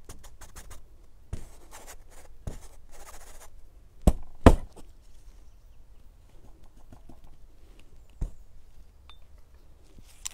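Paintbrush strokes scrubbing oil paint onto canvas in short scratchy passes, then two sharp knocks about half a second apart near the middle and a third a few seconds later.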